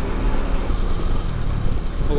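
Motorcycle riding at highway speed: a steady low wind-and-road noise from the air rushing over the rider's microphone, with the engine running underneath.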